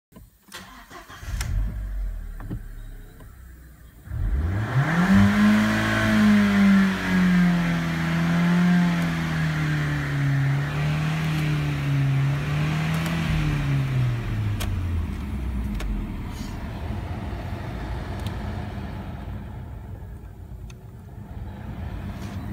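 Volkswagen Passat B5 engine: a low rumble, then about four seconds in the revs climb sharply. They stay high, sinking slowly, for about ten seconds, and drop back near the fifteen-second mark to a low rumble.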